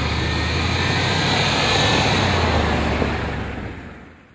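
Range Rover Sport SUV driving past, engine and tyre noise swelling to a peak about two seconds in, then fading out near the end.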